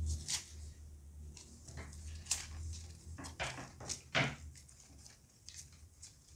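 Paper masking tape being pulled and wrapped by hand around a wire flower stem: a series of short, soft crackles and rustles, with louder ones about two and four seconds in.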